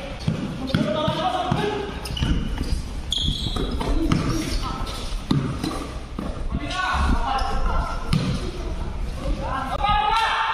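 Basketball bouncing on a hard court floor, with repeated thuds of dribbling and footsteps during a pickup game, and players calling out to one another.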